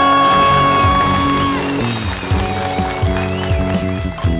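Live rock band with electric guitars, bass and drums. A long held high note cuts off about a second and a half in, and the band moves into a new riff over regular drum hits.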